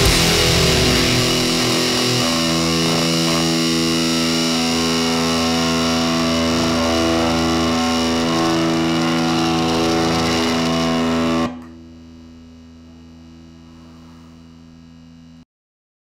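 Heavy-metal distorted electric guitar: a last burst of fast playing, then a final chord left to ring, held steady. The chord cuts off suddenly about three quarters of the way through, leaving a faint steady hum that stops just before the end.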